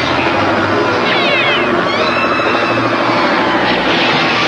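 Cartoon sound effect of a helicopter flying, mixed with short sliding high-pitched effects, over the action music score.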